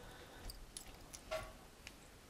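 Faint scattered clicks and light taps from a recessed ceiling spotlight's metal and glass-crystal trim being handled and shifted into place, the most distinct click a little past halfway.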